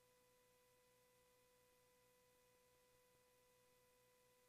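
Near silence: a very faint, steady tone with light hiss.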